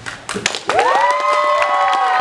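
An audience breaks into applause and cheering: handclapping starts within the first half second. From about a second in, several high whoops rise and then hold over the clapping.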